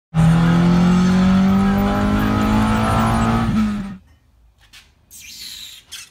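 Car engine, the four-cylinder of a Nissan Sentra, held at high revs around 5,000 rpm, its pitch creeping slightly higher before it cuts off a little before four seconds in. Near the end come a few faint metallic clinks of sockets being rummaged in a toolbox drawer.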